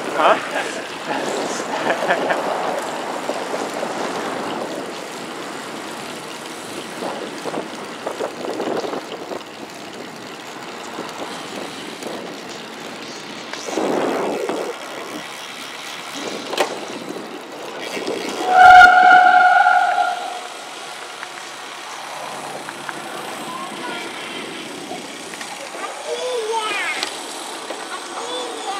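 Wind rush on the microphone and road and traffic noise while riding a road bike along a highway. About two-thirds of the way through, a loud steady tone sounds for about a second and a half.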